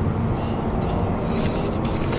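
Steady low rumble of road and engine noise heard from inside a moving car.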